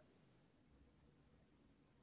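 Near silence: a pause between speakers on a video call, with only a faint low hum.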